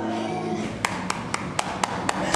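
Music stops about half a second in, then one person claps steadily, about four claps a second.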